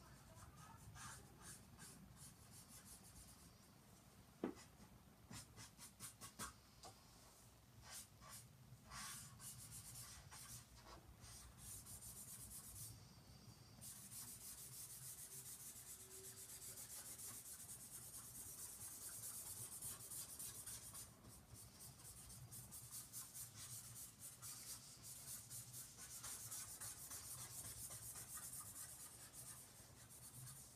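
Faint scratching of a pen drawing on sketchbook paper in many short strokes, with a single sharp tap about four and a half seconds in.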